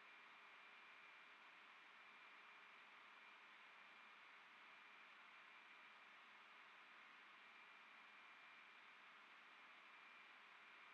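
Near silence: a faint steady hiss of recording noise, with a thin high steady tone.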